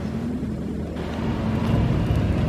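Lamborghini Huracán's V10 engine running at a low, steady note as the car rolls slowly closer, getting louder about a second and a half in.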